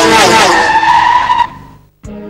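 TV ident sound design: a loud, dense mix of effects with several falling pitch glides that settle into one held high tone, which drops away about one and a half seconds in and fades out.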